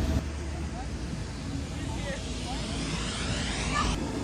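Steady drone of an electric air blower keeping inflatable play structures inflated, with faint children's voices calling a few times.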